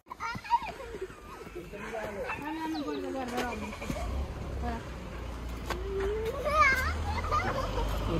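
Indistinct voices of children talking, with a steady low rumble joining in about halfway through, like passing street traffic or wind on the microphone.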